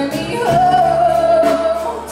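Live zydeco band playing, with singing over the band; a long held note starts about half a second in.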